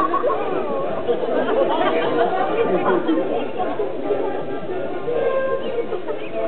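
Several people's voices talking over each other in an indistinct chatter, with some music mixed in.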